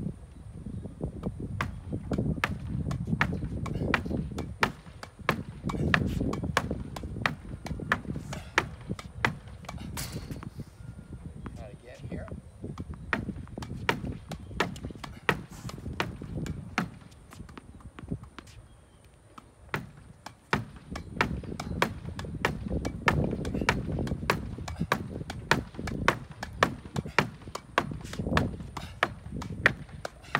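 Tennis ball hit again and again against a tennis backboard in a continuous forehand rally: sharp knocks of racket on ball and ball on board and court, about two a second. Under them runs a low, uneven rumble.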